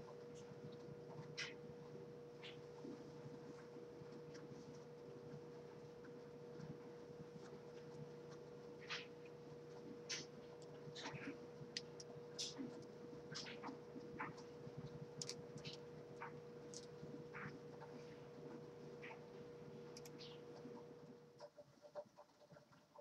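Quiet room tone: a steady low hum that drops out shortly before the end, with scattered faint rustles and light clicks from a head scarf being tied on and earrings being handled.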